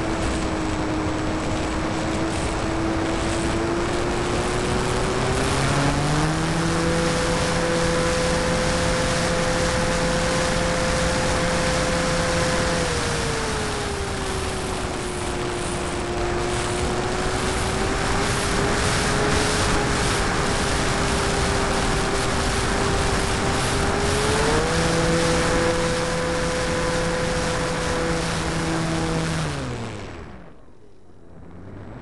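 Onboard sound of an 800mm RC Corsair in flight: its motor and propeller run with a steady tone that rises in pitch about six seconds in, drops back around thirteen seconds and rises again near twenty-five seconds, following the throttle. A rush of air noise runs underneath, and near the end the motor spins down sharply.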